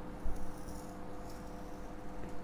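Faint scratching of a marker drawing on a whiteboard, with a short louder stroke about a quarter second in, over a steady faint hum.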